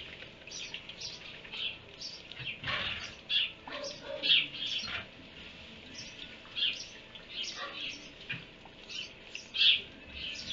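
Small birds chirping: short, high chirps scattered irregularly, about one or two a second, over a faint steady background.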